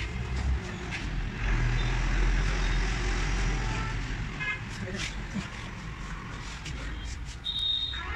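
A steady low rumble with indistinct voices in the background, and a short high-pitched beep about three-quarters of a second before the end.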